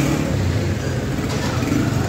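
Chapli kababs frying in oil on a large flat iron pan: a steady sizzle over a low, continuous rumble.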